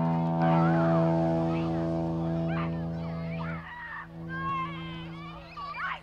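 Trumpet holding one low, steady note for about three and a half seconds, then dropping to a softer held tone until near the end.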